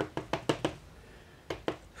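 Master Lock M530 padlock being tapped and shaken by hand to knock its key pins out: a quick run of sharp clicks, then two more after a short pause.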